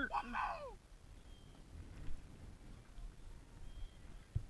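A man's cheering whoop trails off in the first second, followed by faint outdoor ambience with a low wind rumble on the microphone.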